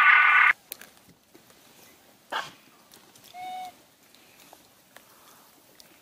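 A loud sustained sound cuts off about half a second in. The rest is quiet, with a short rasp around two seconds in and one brief rising-and-falling call from a macaque at about three and a half seconds.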